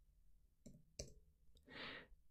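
Near silence with a couple of faint computer keyboard key clicks about two-thirds of a second and a second in, followed by a soft intake of breath near the end.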